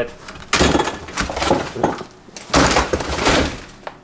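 Metal clatter of a wrench working a bolt on a car seat's steel frame and rails, in two loud bursts of rapid clicks and knocks, the first starting about half a second in and the second about two and a half seconds in.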